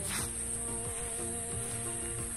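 A steady, high-pitched drone of insects, with soft sustained musical notes beneath it. There is a brief rustle near the start.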